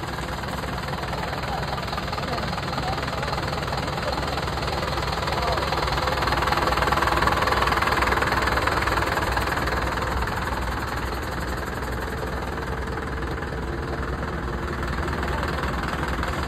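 A vehicle engine idling steadily with a rough, even clatter, growing somewhat louder around the middle before settling back.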